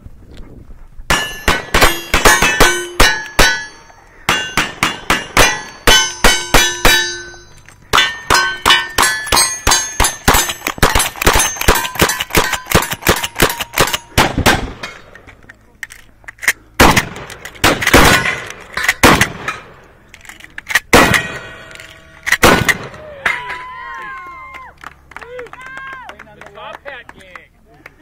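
Rapid gunfire from two cowboy action shooters racing each other, including a lever-action rifle, with steel targets clanging and ringing after hits. The shots come in quick strings through the first half, then as slower, spaced shots.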